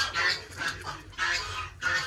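Domestic poultry calling, a few short high clucks in quick succession.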